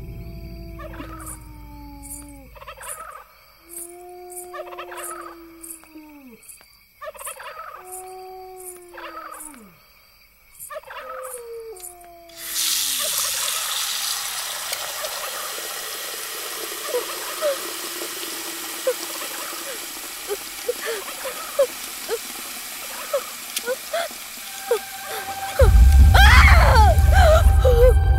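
Eerie horror-film sound effects: about six drawn-out animal-like calls, roughly two seconds apart, each sliding down in pitch at the end, over regular high ticking. About halfway through, this gives way suddenly to a steady hiss like wind with scattered short chirps, and a loud low hit comes right at the end.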